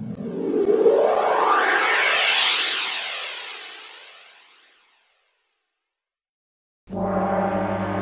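A rising swept sound effect that climbs in pitch over about three seconds, then fades away by about five seconds in. After a couple of seconds of silence, music starts abruptly near the end.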